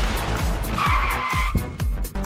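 Animated logo sting: swooshing, rushing sound effects over electronic music with a repeating kick drum. A bright high tone sounds for about half a second around the middle.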